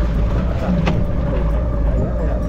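Jet ski engine running steadily under way, a continuous drone mixed with the rush of water past the hull.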